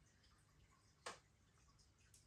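Near silence: room tone, broken once about a second in by a single brief soft click.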